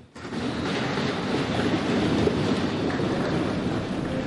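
Applause from a large seated audience, starting a moment in and going on steadily.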